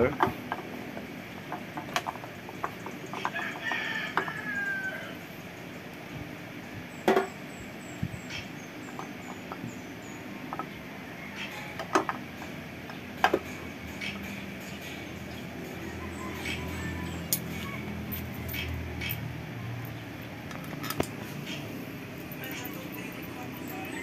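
Scattered light metallic clicks and knocks of an aluminium cylinder head cover being handled and seated back on a push-rod motorcycle engine, the sharpest knock about seven seconds in. A rooster crows once in the background about three to five seconds in.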